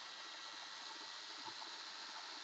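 Faint steady hiss of background room tone, with no tool running.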